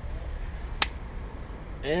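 A single sharp click about a second in: a plastic retaining clip of a 2006 Scion xB's front door trim panel snapping into place as the panel is pressed onto the door.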